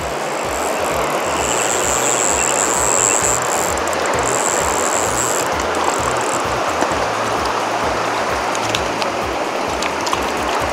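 Steady rushing of a shallow river running over stones, under background music with a pulsing bass.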